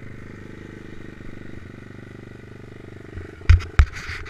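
Stomp pit bike's small single-cylinder four-stroke engine idling steadily, with two loud short thumps near the end.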